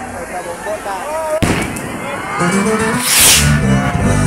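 Fireworks going off during the burning of a fireworks castle: a single sharp bang about a second and a half in, then a loud hissing burst near three seconds. Voices are heard early on, and music comes in during the second half.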